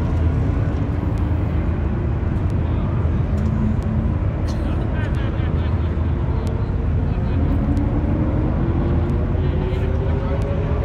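Idling engines of a Nissan GT-R and a Mustang 5.0 at the drag-strip start line, over a steady low rumble, as the cars creep forward to stage. In the second half an engine's pitch rises slowly.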